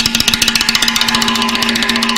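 A drum played in a very fast, even single-stroke roll, about fifteen strokes a second, over a steady ringing pitch from the drum.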